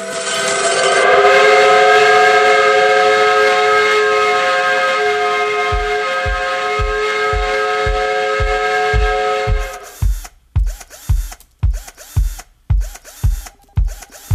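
Georgia Tech's steam whistle blowing one long chord for about ten seconds, then cutting off suddenly. About six seconds in, a music track's kick-drum beat comes in at about two beats a second and carries on, with chopped, stuttering sound, after the whistle stops.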